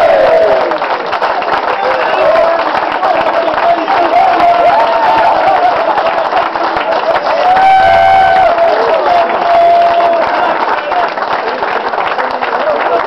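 A roomful of people applauding, with cheers and shouted calls over the clapping.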